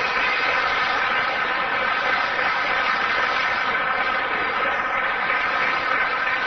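Audience applauding, a dense, steady clapping that breaks out just before and runs on without letting up.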